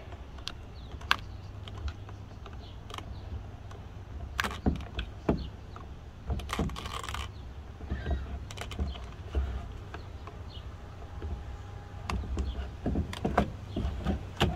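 Scattered small clicks and taps of a little flathead screwdriver prying at the old, brittle plastic of a GM truck instrument cluster, working the gauges loose from their seats, with a brief scratchy noise about halfway. A low steady rumble runs underneath.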